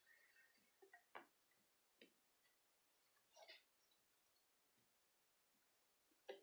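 Near silence, broken by a few faint short clicks about a second, two seconds and three and a half seconds in, from handling a tapestry needle and yarn in a crocheted piece.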